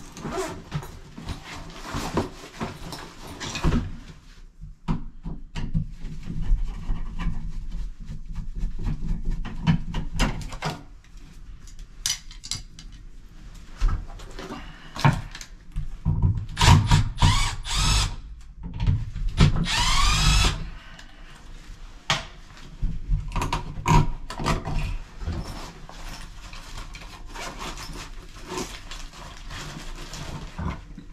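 Cordless drill/driver running in short bursts as it backs out the screws of a wall receptacle, mixed with clicks and clatter of handling. One longer run, about twenty seconds in, has a rising whine.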